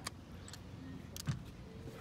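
Low background noise with two brief clicks, one right at the start and one a little after halfway.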